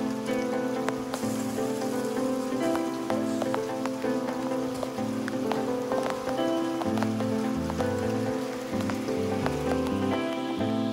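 A sudden rain shower falling on a concrete yard, many small drop ticks in a steady hiss, with background music playing over it.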